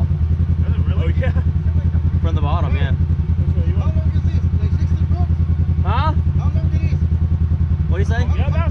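A vehicle engine running steadily, a low rumble with a rapid, even pulse, with voices talking over it.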